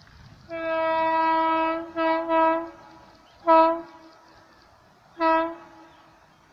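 Horn of a WAP7 electric locomotive sounding: one long blast, then two short blasts in quick succession, then two more short blasts a couple of seconds apart, each at one steady pitch.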